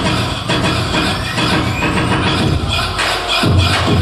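Loud electronic dance music played for a hip-hop routine, with a rising sweep about a second in, then deep bass hits near the end.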